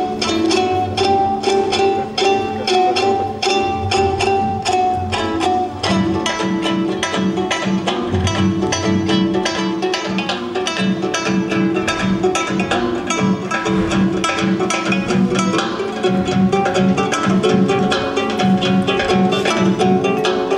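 Live Georgian folk dance music: a hand drum beating a fast rhythm under plucked and bowed string instruments. About six seconds in, a held high note drops out and a low pulsing beat takes over.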